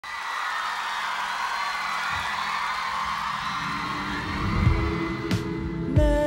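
Audience cheering, then a live rock band of drums, bass, electric guitars and keyboard comes in with the song's intro a little past halfway, getting louder toward the end.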